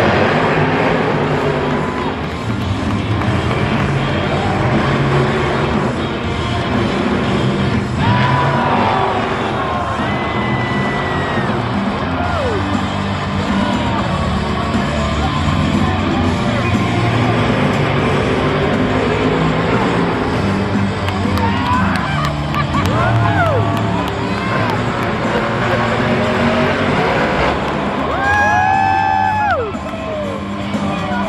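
Supercharged V8 monster truck engines running hard and revving during a race, mixed with loud stadium music and a cheering crowd.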